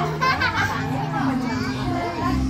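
Children's excited voices and chatter over background music.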